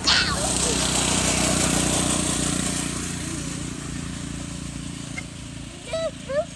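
A motor vehicle passing by: engine and road noise swell at the start, are loudest for about two seconds, then fade away over the next few, over a steady low engine hum.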